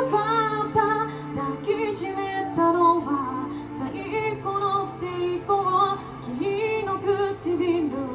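Live amplified rock band music: a singer carries a melody over bass guitar and drums.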